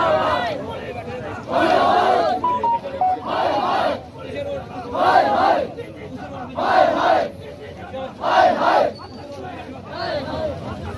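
Large protest crowd shouting slogans in unison, a loud chorus of voices every second or two with quieter stretches between.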